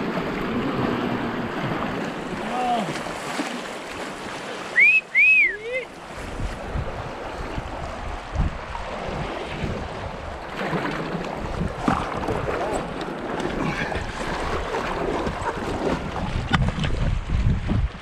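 Fast river water rushing and splashing around an inflatable paddleboard running a rapid, with wind buffeting the camera microphone. A short, high, sliding call about five seconds in is the loudest sound.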